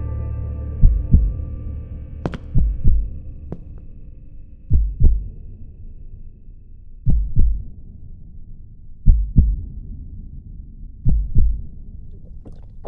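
Heartbeat: slow paired low thumps (lub-dub), six beats about two seconds apart, while a held musical chord fades out over the first couple of seconds. A single sharp tick sounds about two seconds in.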